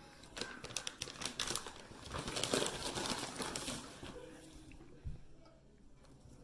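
Plastic biscuit packaging crinkling and crackling in a dense run of quick crackles for about three and a half seconds, then fading away, with one soft low thump about five seconds in.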